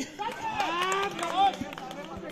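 Several voices shouting and calling out at once during a volleyball rally, the calls sliding up and down in pitch and loudest in the first second and a half.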